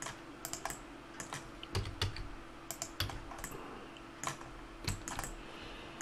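Computer keyboard keys and mouse buttons clicking, a dozen or so irregular, separate clicks over a faint steady hum.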